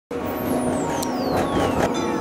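Road traffic noise with a falling whoosh, as of a vehicle passing.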